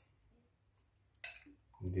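A brief scrape of a spoon against a bowl about a second in, as sauce is spooned into the pot, in an otherwise quiet moment.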